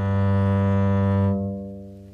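Double bass playing its open G string with the bow: one long, steady low note, held for over a second and then fading away.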